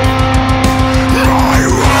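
Death/doom metal: heavily distorted guitars and drums, loud and dense, over a fast, even low pulse.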